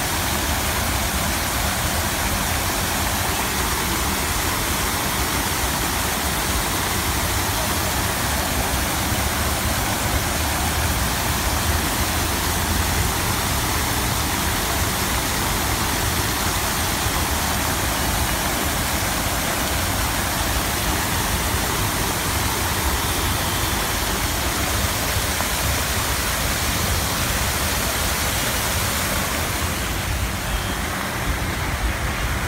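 Water-dance fountain with many jets spraying and splashing back into its basin: a steady, unbroken rush of falling water.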